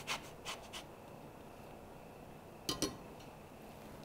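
Orange peel being grated on a microplane zester: a few faint scraping strokes, then two light knocks a little before three seconds in.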